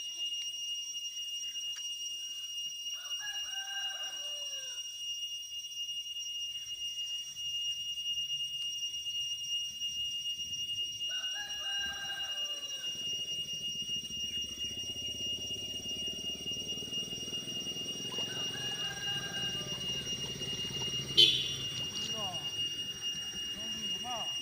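A rooster crowing three times, each call about a second and a half long and falling in pitch at the end, several seconds apart. A sharp click sounds near the end, and steady high-pitched tones run underneath.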